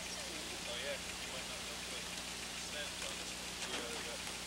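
Steady hiss-like background noise with a low steady hum, and faint distant voices now and then.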